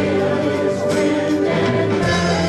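Live praise and worship band music: singers holding long notes over guitars and keyboard.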